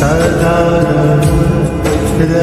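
Hindu devotional hymn to Hanuman, chanted vocals over a sustained musical backing.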